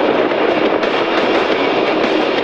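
A loud, steady rushing noise with no distinct clicks, tones or rhythm.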